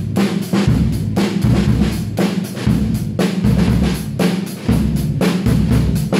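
Pearl acoustic drum kit played in a steady, driving beat: bass drum thumps, snare hits and cymbals ringing over the top.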